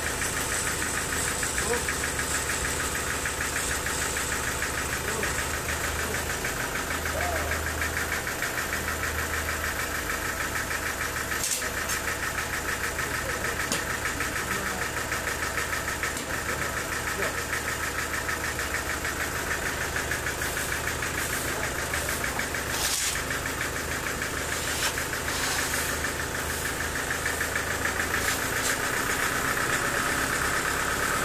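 Homemade portable sawmill running steadily while teak is fed through it: a continuous mechanical drone with a fast, even pulse. Two sharp clicks come through, about a third and about three-quarters of the way in.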